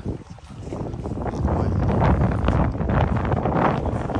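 Wind buffeting the phone's microphone as a low, gusty rumble that swells about a second in and stays loud, after a short laugh at the start.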